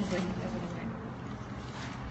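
Steady rushing noise with a low rumble, with faint voices underneath.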